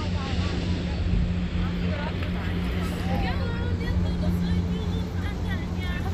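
Steady low drone of a boat's engine on the harbour water, with people's voices chattering faintly in the background.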